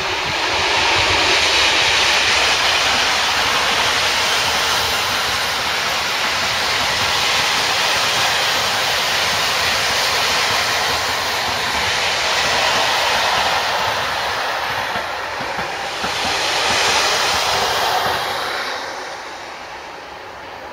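Freight train passing: the DSB MZ-class diesel locomotive at the head goes by, then a long string of wagons rolls past with a steady rumble and rush of wheels on rail, dying away near the end as the last wagons pass.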